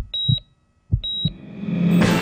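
Heart-monitor sound effect: two high, steady beeps about a second apart, each with low heartbeat thumps, then a sound swelling up near the end.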